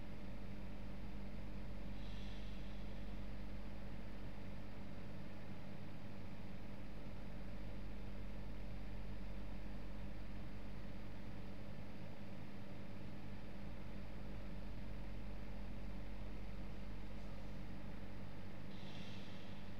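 Steady low background hum with a few constant tones: room tone of a home recording, such as a computer's fan or electrical hum picked up by the microphone. A faint brief hiss comes about two seconds in and again near the end.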